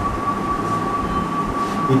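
Steady background room noise: a low rumble with a constant high-pitched hum running through it.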